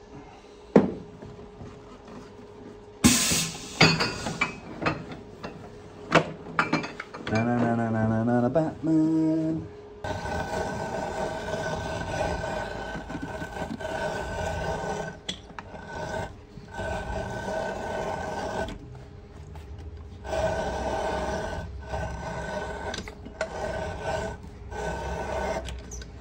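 Shoe-repair bench work on a leather outsole: assorted knocks and a sharp hiss about three seconds in. From about ten seconds a motor-driven workshop machine runs with a steady whine and a rasping, grinding noise, cutting out and restarting several times.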